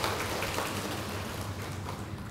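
Large audience applauding, a dense patter of many hands clapping that fades out near the end.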